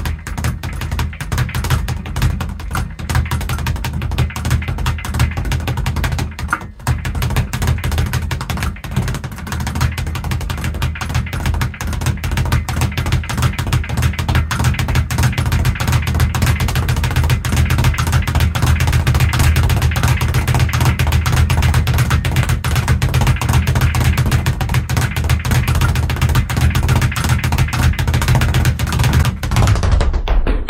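Speed bag being punched against a round wooden rebound board, a rapid unbroken rattle of strikes that grows faster and louder. There is a brief break in the rhythm about seven seconds in.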